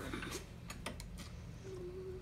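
A few sharp, irregular small clicks from handling the battery pack and switch of the bike's wheel spoke lights, over a steady low hum.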